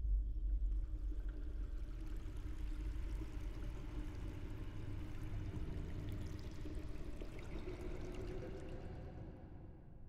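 Water running steadily into a sink, fading away near the end.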